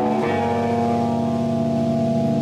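Live rock band's electric guitar and bass holding one sustained chord, which changes just after the start and then rings on steadily without drums.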